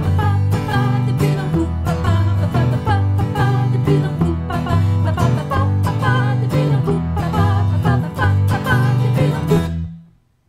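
Acoustic guitar and electric bass guitar playing an upbeat 1960s yé-yé pop song with a steady rhythmic bass line, stopping abruptly at the very end.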